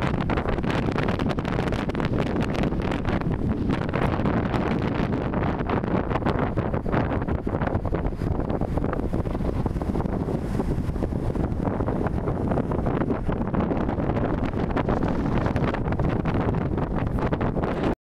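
Strong wind blowing straight onto a phone's microphone: a steady, loud, low rumble that flutters constantly with the gusts.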